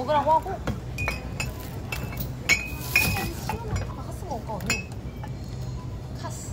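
Glass beer and soju bottles clinking against each other as they are set down in a shopping cart, with several sharp clinks over the first three seconds.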